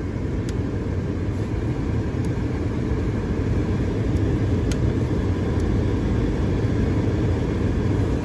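Steady low rumble of a car running at idle, heard from inside the cabin, with a few faint clicks as the headlight switch is turned.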